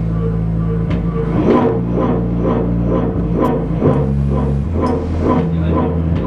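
Loud experimental noise music: a steady low droning hum with a short pulse repeating about three times a second over it. The drone changes pitch about four seconds in.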